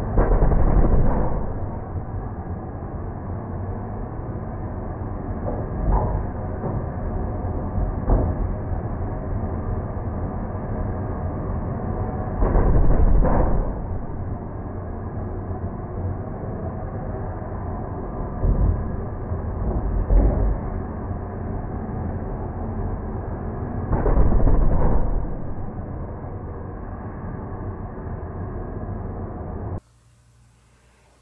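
Handheld gas torch hissing steadily at the tip of a 5.9 Cummins (Bosch KDAL) diesel injector on a pop tester. There are loud bursts of about a second near the start, about 13 s in and about 24 s in, and a few shorter ones, as each pumped spray of fuel from the 7-hole nozzle catches fire.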